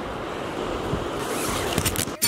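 Wind buffeting the microphone: a steady rushing noise with an uneven low rumble.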